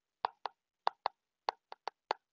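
Stylus tip tapping on a tablet's glass screen while handwriting capital letters: about seven short, sharp taps at an uneven pace.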